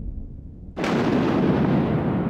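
A low rumble, then a sudden, loud explosion-like boom a little under a second in that stays loud.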